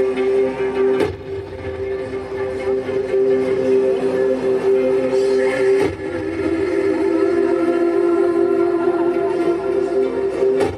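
Music for a stage dance performance: a sustained droning chord held steady, broken by sharp percussive hits about a second in and again just before six seconds.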